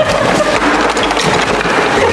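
A cardboard toy box rustling and scraping as it is grabbed and shaken about, a steady loud noise with no pauses.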